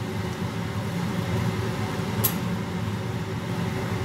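Butter sizzling and bubbling in a nonstick frying pan as curry leaves and sliced chilli fry in it and are stirred with a spatula, with a single sharp click about two seconds in.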